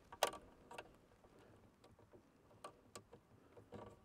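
A few faint, sharp clicks and taps as cable ends are handled and fitted into the screw terminals of a solar charge controller, the loudest just after the start.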